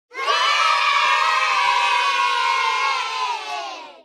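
A group of children cheering together in one long held shout that starts abruptly, then sags in pitch and fades away over the last second.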